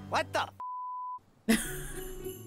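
A cartoon voice says "what the" and is cut off by a single steady censor bleep about half a second long. After a brief silence, Christmas music with jingle bells starts.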